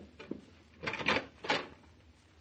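Radio-drama sound effect of a wooden front door being opened: a faint click, then two louder short clunks of the latch and door about a second in and half a second later.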